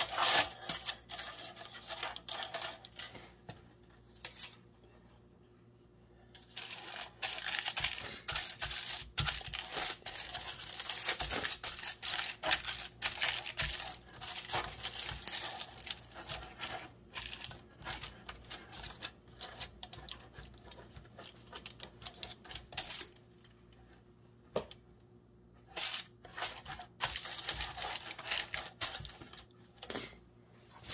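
Aluminium foil crinkling as hands press and smooth it into a loaf pan, in irregular bursts with two quiet pauses, one early and one past the middle.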